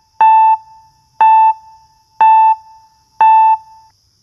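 Electronic beep tones at one steady pitch, one per second, four times, each about a third of a second long: a quiz countdown-timer sound effect ticking off the time to answer.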